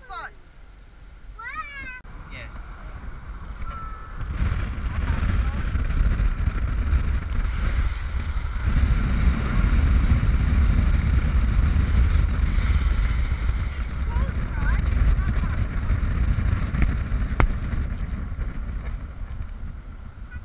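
Heavy wind noise buffeting the microphone of a moving car, with road noise, loud from about four seconds in after a quieter start. A single sharp click comes near the end.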